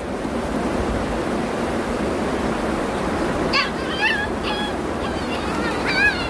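Steady rush of knee-deep floodwater. From about three and a half seconds in, a pet gives several short high cries.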